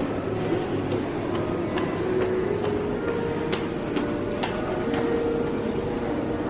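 Steady background hum of a large indoor space, with faint wavering tones in it and a few short, sharp clicks and clinks between about one and a half and four and a half seconds in.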